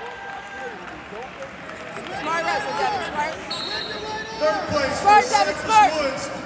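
Raised voices shouting over the murmur of a crowd in a large arena. The shouts start about two seconds in and grow more frequent and louder toward the end.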